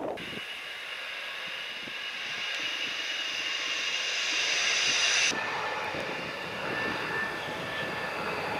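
Su-30 fighter's jet engines whining and roaring close by, growing louder over the first five seconds. About five seconds in the sound cuts suddenly to a quieter, steadier jet noise.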